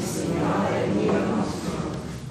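People's voices chanting, trailing off near the end.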